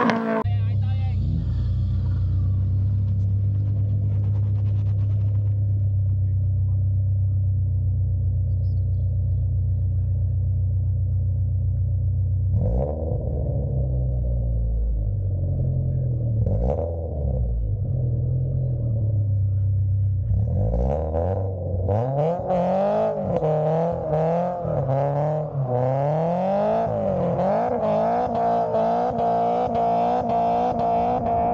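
Toyota 86's flat-four engine held at steady revs for about the first twelve seconds. After that the revs rise and fall, and in the last third they swing up and down quickly as the car spins donuts.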